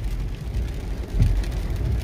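Car driving on a wet road in heavy rain, heard from inside the cabin: a steady low rumble of engine and tyres, with a faint hiss of water above it.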